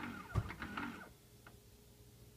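Keurig Vue 700 single-serve coffee brewer starting an 8-ounce brew cycle: a short run of clicks and a low thump in the first second, then only a faint steady hum.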